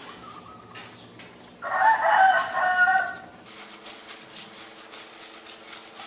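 A rooster crowing once, starting about one and a half seconds in and lasting about a second and a half, the loudest sound here.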